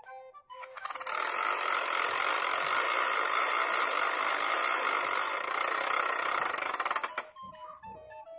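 A plastic BeanBoozled spinner wheel spun, its pointer clicking so fast that the clicks run together into a dense rattle. The rattle starts about a second in and stops about seven seconds in.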